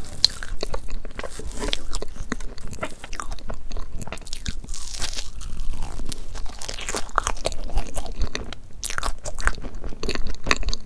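Close-miked eating sounds of soft crepe cake: a wooden fork cutting through the cream-filled layers, then dense, irregular clicky chewing of the cake.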